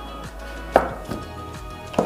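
Background music, with a sharp knock about three-quarters of a second in and a shorter one near the end, from the cardboard phone box being handled as its lid is opened.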